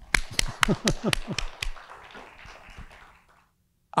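Scattered audience applause: a run of distinct claps at about four a second, thinning into a fainter patter that fades out shortly before the end.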